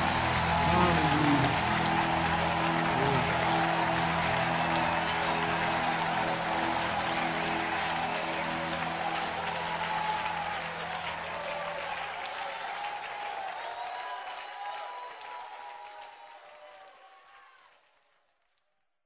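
Crowd applauding and cheering over the band's held closing chord. The chord dies away about two-thirds of the way through, and the applause fades out to nothing near the end.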